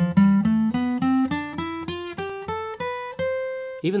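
Gibson J-45 acoustic guitar playing a C major scale ascending two octaves, single picked notes stepping steadily upward and ending on a held high C that rings briefly.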